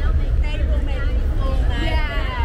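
Voices of a group of people on a city street calling out and chatting, the loudest call near the end, over a steady low rumble of street traffic.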